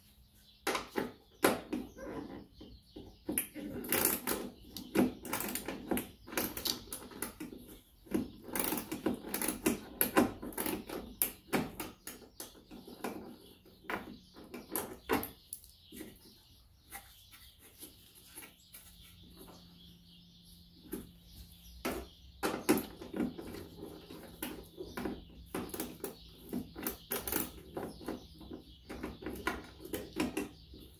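Hand ratchet and socket clicking in short, irregular runs, with taps of the metal tool, as rusted fasteners are worked loose.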